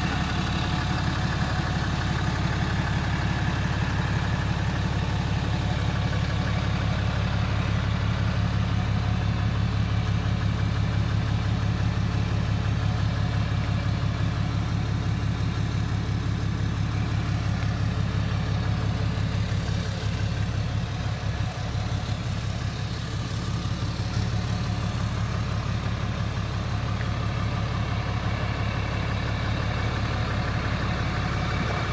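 Repo tow truck's engine idling steadily, a low, even hum that dips slightly about two-thirds of the way through.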